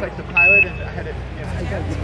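A single short Quindar tone, a steady high beep of about a quarter second, heard over a public-address loudspeaker relaying NASA's air-to-ground loop. It marks the end of a Houston capcom transmission to the shuttle crew.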